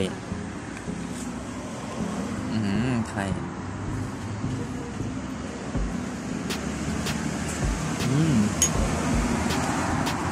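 Steady road traffic noise in the background. A man murmurs a short "mm" twice, and a metal spoon makes a few light clicks against a ceramic bowl in the second half.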